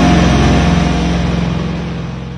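Heavy metal song ending on a held distorted chord that rings out and fades away steadily.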